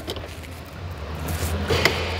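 5.3-litre V8 of a 2018 GMC Yukon idling, heard from inside the cabin as a steady low hum, with rustling in the second half and a sharp click near the end.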